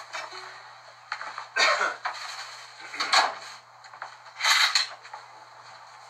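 Handling noises as a phone is moved and set down: about three short scuffs and bumps with a few faint clicks, over a steady low hum.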